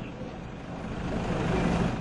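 A vehicle engine running amid street noise, growing louder in the second half.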